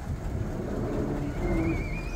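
1948 Ford truck's engine running with a steady low rumble as the truck rolls slowly forward, with a brief high wavering squeak in the second half.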